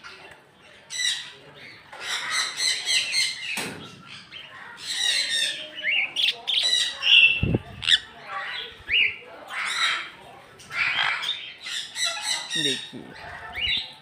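Sun conures squawking: repeated harsh, shrill calls in bursts of about a second each, with short gaps between.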